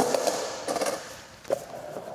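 Skateboard knocking and rattling: a sharp clack at the start that fades into rattly noise, then another short knock about one and a half seconds in.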